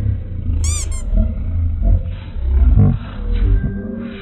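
Slowed-down audio under a slow-motion replay: the room's voices and laughter dragged down into deep, drawn-out growling. A short, high, sparkling sound effect comes in just under a second in.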